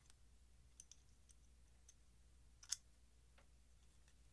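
Quiet, faint small clicks of metal parts of a disassembled titanium folding knife being handled and fitted back together, with one sharper click about two-thirds of the way through.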